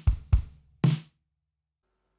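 Logic Pro's 'Liverpool' sampled drum kit playing a programmed kick-and-snare step pattern: two kick drum hits about a quarter second apart, then a snare hit. Playback stops about a second in.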